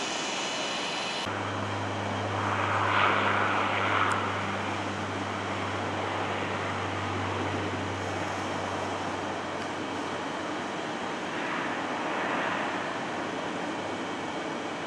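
Jet airliner engines running, heard as a steady rushing noise across the airport. It swells twice, about three seconds in and again near the end. Just over a second in, the background changes abruptly and a low hum comes in.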